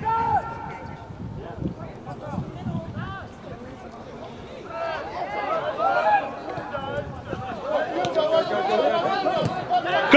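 Distant shouting and calling of several voices across an outdoor soccer field, sparse at first and getting busier about halfway through.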